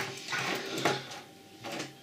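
Small electrical parts (relays, push-buttons and wires) being handled and set down on a wooden tabletop: light rustling with a few small knocks, one a little under a second in, dying away in the second half.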